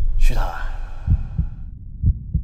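A short sweeping sound, then a deep double thump about a second in, like a heartbeat: a trailer's heartbeat sound effect.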